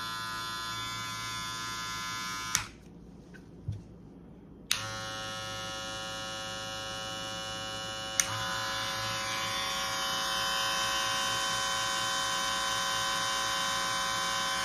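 Cordless rotary-motor hair clipper (Stylecraft Rebel) running with a steady buzzing hum, switched off with a click about two and a half seconds in. After a pause of about two seconds a clipper clicks on again, and about three and a half seconds later a second one clicks on: the Stylecraft Rebel and Wahl Gold Magic Clip running together, both with the same rotary motor sound.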